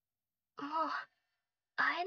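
A woman's voice gives a short voiced sigh about half a second in, then begins speaking in Japanese near the end.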